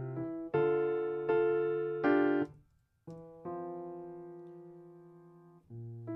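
Virtual piano playing back a MIDI part of slow chords. After three struck chords the notes stop abruptly about two and a half seconds in, as the sustain pedal lifts. After a brief gap a new chord rings and fades for about two seconds under the pedal, and another chord is struck near the end.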